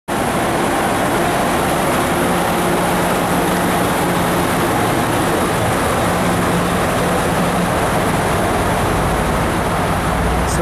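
Amtrak Pacific Surfliner bilevel passenger cars rolling past close by as the train pulls out: a loud, steady rolling noise of wheels on rail, with a faint steady hum under it.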